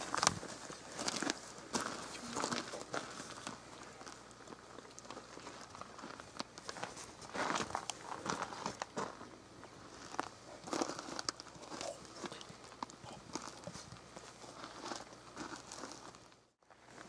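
Footsteps crunching and scuffing on the ground, with clothing rustle, in an uneven walking rhythm.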